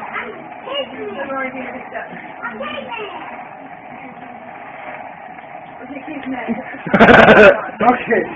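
Low, indistinct voices over the steady hum of the homemade Van de Graaff generator's fan motor, which drives the rubber-band belt. About seven seconds in there is a short, loud vocal outburst.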